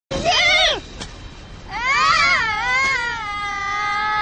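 A high-pitched voice gives a short, wavering cry, then, a little before halfway, starts a long drawn-out wail that is still going at the end.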